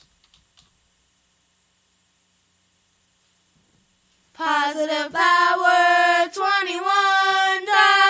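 About four seconds of near silence, then a high solo voice starts singing without accompaniment, holding long, wavering notes.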